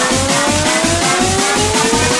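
Heavy-beat electronic dance music from a DJ mix: a steady, fast kick-drum beat with a tone gliding slowly upward over it.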